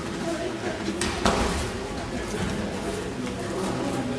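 Judo students landing on the mats during rolls and throws, with two sharp slaps of bodies on the mat close together about a second in, echoing in a large hall with voices in the background.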